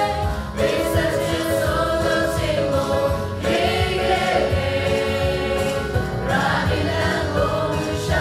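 Choir singing a Christian hymn with instrumental accompaniment.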